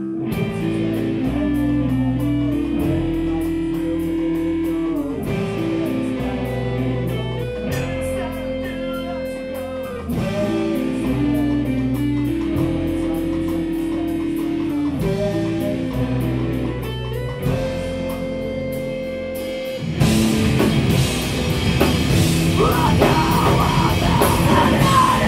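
Live rock band playing: electric guitars and bass repeat a riff over a drum kit in cycles of about five seconds. About twenty seconds in the band comes in louder and heavier, and the vocalist shouts "oh, yeah" near the end.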